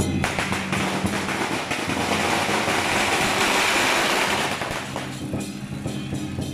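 Temple-procession percussion, dominated by a dense, hissing cymbal wash that swells to its loudest about three to four seconds in and fades away near the end.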